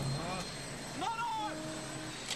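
Movie soundtrack on an airfield: steady engine noise with a few brief voices calling out.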